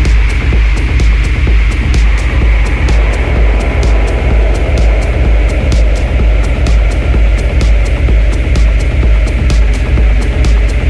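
Electronic dance track with no vocals: a loud, continuous sub-bass under regular, crisp hi-hat ticks.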